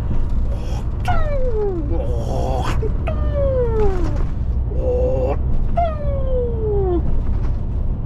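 A man's voice making three long falling wails, each sliding down in pitch over about a second, with shorter held notes between them. Under it runs the steady low rumble of the lorry's engine and road noise in the cab.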